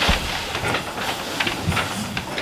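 Chairs being moved and people sitting down at a table, with a series of knocks and clatters over a rustling noise, the sharpest knock right at the start.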